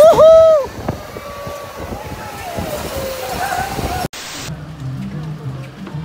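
A man yells loudly with mouth wide open for under a second on an amusement-park ride, followed by a rushing noise with other riders' voices. About four seconds in, the sound cuts to background music with a low, steady bass line.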